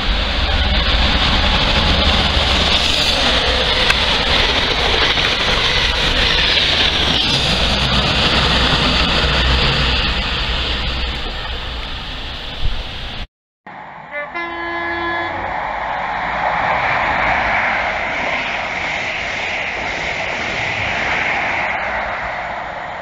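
InterCity 125 High Speed Train (Class 43 power cars) running through a station at speed: a loud, steady rushing roar with deep rumble. After an abrupt break, a train horn sounds once, briefly, as another HST approaches, followed by the rising rush of the train.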